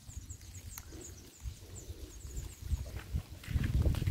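Footsteps on dry sandy soil with a low uneven rumble, under a run of faint, short, high-pitched chirps and one sharp click about a second in.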